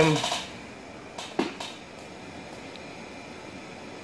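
A few light metallic clicks from hand tools being handled, about a second and a half in, over a steady fan-like hiss of the workshop.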